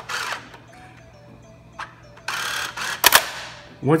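Jofemar JF8 coin changer's carriage mechanism working through its return-carriage start-up after a software update: a cluster of clicks, a short run of mechanical whirring, then a sharp clack about three seconds in.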